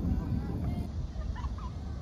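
Outdoor ambience with a steady low rumble and faint distant voices, and a short animal call about one and a half seconds in.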